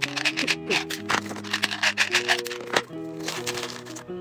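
Background music with held notes, over a run of small clicks and rattles from supplement capsules being shaken out of a plastic bottle.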